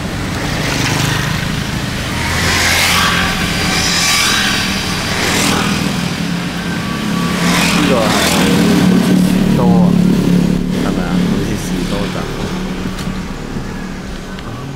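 Engine hum and road noise heard inside a moving car's cabin. Several passing vehicles whoosh by one after another in the first half.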